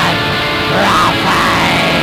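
Raw black metal: a dense wall of distorted guitar and bass, with a melodic line that bends up and down in pitch about halfway through.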